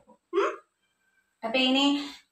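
Only a woman's voice: a short questioning "hmm?" with rising pitch, a pause of under a second, then speech resumes.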